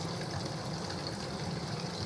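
Steady trickle of running water from a bamboo-spout garden water feature, with a low steady hum underneath.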